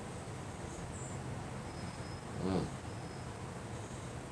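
Quiet outdoor background with a few faint, brief high-pitched chirps; a man gives a short 'mm' of approval about halfway through.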